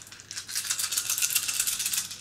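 A handful of small plastic board-game tokens shaken and rattled together for about a second and a half: a dense, fast clatter of many small pieces knocking against each other, returned to the pool for a random draw.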